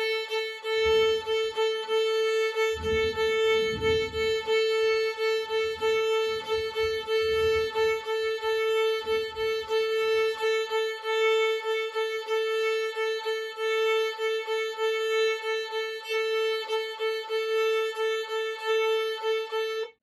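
Violin played on one open string, the A, in shuffle bowing: a long bow stroke followed by two short ones, repeated in a steady driving rhythm. The same note runs throughout and pulses at each change of bow.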